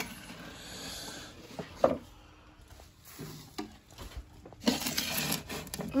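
A plastic cup knocking and rubbing against the glass of an aquarium, with handling noises: a sharp knock about two seconds in, lighter taps after, and a louder stretch of rustling and clicks near the end.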